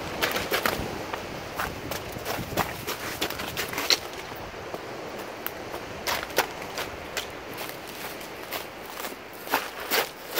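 Footsteps on rocks and beach pebbles: irregular clacks and crunches of stones underfoot, thickest in the first few seconds and again near the end, over a steady hiss of surf.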